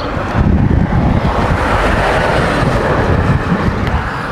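Wind buffeting the microphone: a loud, gusty rumble with a rushing noise that swells toward the middle and fades.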